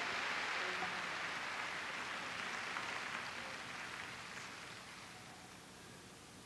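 Congregation applauding, the clapping dying away gradually over several seconds.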